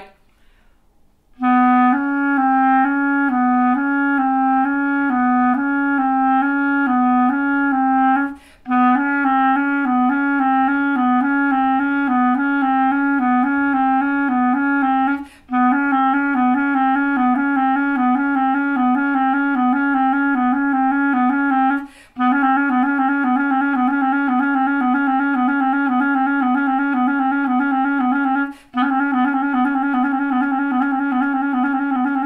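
Clarinet playing a fast, repeating few-note finger exercise in its low register. The notes alternate rapidly in long even runs, broken four times by quick breaths.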